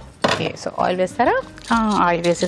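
Speech only: a woman talking, with no other sound standing out.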